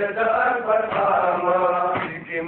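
Pashto noha, a Shia mourning lament, chanted by voices in long held notes.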